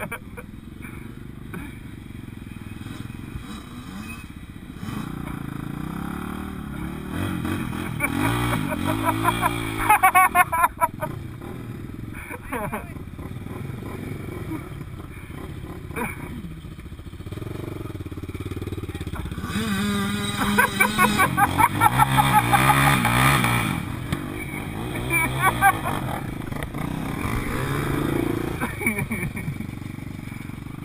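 Dirt bike and ATV engines idling close by and revving, the revs climbing and falling a couple of times, most strongly about two-thirds of the way through.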